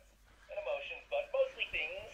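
A short burst of the Wonder Workshop Cue robot's synthesized voice, thin as from a small built-in loudspeaker, starting about half a second in.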